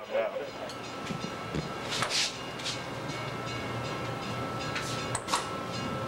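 Bascule bridge machinery running in the bridge tender's house: a steady low rumbling hum with a thin, steady high whine, broken by two sharp clanks, about two seconds in and about five seconds in.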